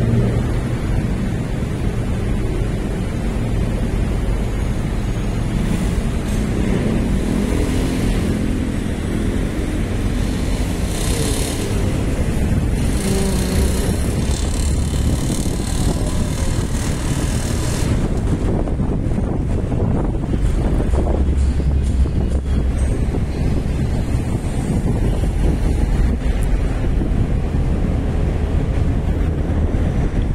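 Traffic noise and wind on the microphone while riding in the open back of a moving pickup truck: a steady low rumble of engines and tyres, with the hum of nearby engines in the first few seconds.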